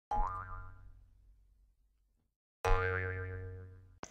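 Cartoon 'boing' sound effect, played twice about two and a half seconds apart, each a wobbling springy twang that fades out over about a second.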